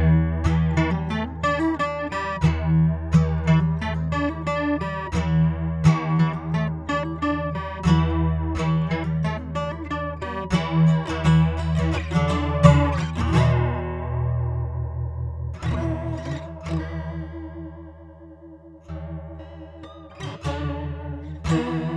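Taylor 214ce electro-acoustic guitar played through a Boss CE-2W Waza Craft chorus pedal: picked notes and chords with the chorus wavering their pitch. In the second half a chord is left to ring and fade for several seconds before a new strum near the end.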